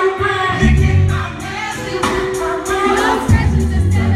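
Live R&B slow jam from a concert stage: a band with deep bass notes and a regular cymbal beat under several voices singing.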